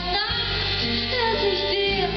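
A woman singing a slow song live into a microphone, her voice gliding between held notes over a steady instrumental accompaniment.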